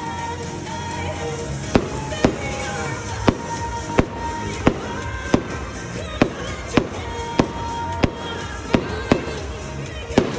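Aerial fireworks shells bursting overhead, about a dozen sharp bangs at uneven intervals of roughly half a second to a second. Music plays under the bangs.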